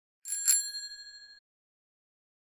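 Bicycle bell rung twice in quick succession, its ring fading away within about a second.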